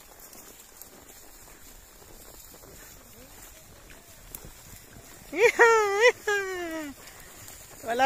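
A horse whinnying loudly for about a second and a half, a little past the middle. The call's pitch wavers, then falls away at the end.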